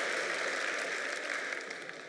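Large audience applauding, the clapping slowly dying away near the end.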